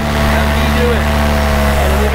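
Paramotor engine and propeller running at steady power in flight, a continuous low drone that holds the same pitch throughout.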